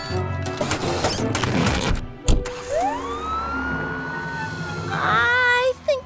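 Cartoon soundtrack: background music with busy effects, a sharp thump about two seconds in, then a siren that winds up, holds and slowly falls away.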